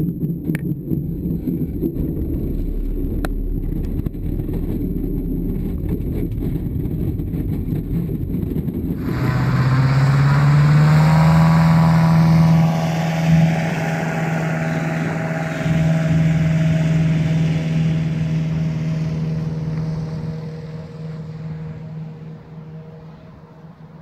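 Low rumble inside a glider's cockpit as it rolls on the runway, with a couple of clicks. Then, from about nine seconds in, the piston engine of a high-wing light aircraft of the Piper Cub type runs steadily at high power, its pitch rising a little at first, and fades away over the last few seconds.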